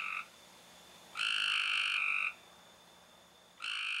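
Frog calls: long, even croaks of about a second each, one about a second in and another starting near the end, with quiet between them.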